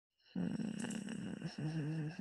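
A woman's low, wordless vocal murmur, like a hum in the throat, starting about a third of a second in, with a faint steady high whine behind it.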